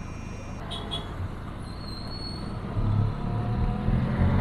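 Road traffic engines running as vehicles move off, with a louder engine pulling away about three seconds in.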